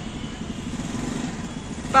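A small two-wheeler engine idling steadily at close range under street noise, with a voice starting right at the end.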